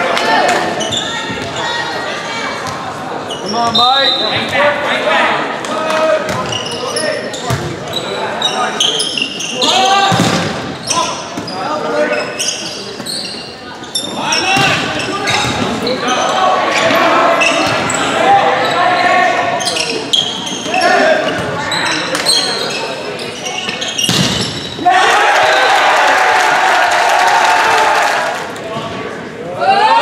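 Volleyball being played in a gymnasium: the ball smacks off hands and the hardwood floor again and again, with players and spectators shouting, all echoing in the large hall. A louder burst of crowd noise comes about three seconds before the end.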